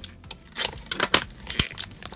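Plastic wrapper of a blind-bag toy package crinkling and tearing as it is worked open by hand, a quick run of sharp crackles.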